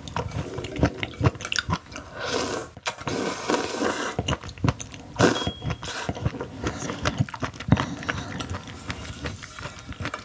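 Close-miked slurping and wet chewing of raw sea cucumber intestines, a dense run of sticky mouth clicks and short slurps. A brief high ping sounds about five seconds in.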